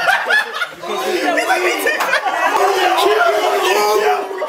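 A group of men laughing and talking over one another, loud and excited.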